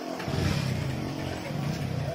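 A motor vehicle engine running, coming in about a third of a second in.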